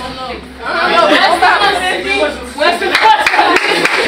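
Speech: a man talking in a room, with other voices around him.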